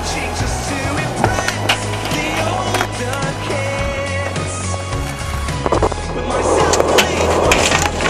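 A music track plays over skateboard sounds: wheels rolling on concrete, several sharp clacks of the board hitting the ground, and a louder rolling rush near the end.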